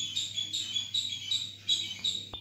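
Background chirping, short high-pitched chirps repeated about four times a second, over a faint steady hum.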